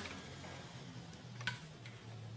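Quiet room tone with a faint low hum and two soft ticks close together about one and a half seconds in.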